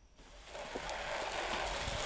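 Water spraying from a garden hose nozzle: the spray starts about a third of a second in, swells, and then runs as a steady hiss.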